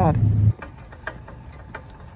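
A woman's voice trails off over a steady low hum that cuts off suddenly about half a second in. Faint background noise with a few light clicks follows.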